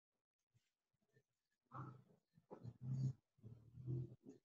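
Near silence for about the first two seconds, then a faint, broken-up voice coming through a video call in short bits.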